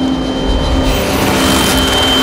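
Film-trailer sound design: a dense noisy swell over a held low drone, with a thin steady high tone coming in about a second in.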